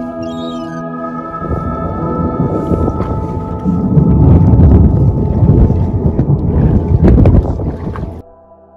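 Sustained ambient music notes over a rough rush of wind and sea noise on the microphone of a boat at sea, growing much louder about halfway in.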